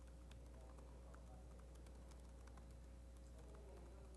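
Faint typing on a laptop keyboard: scattered key clicks over a low steady hum.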